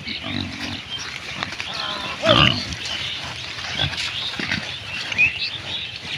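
A herd of pigs grunting as they forage, with one louder call about two seconds in.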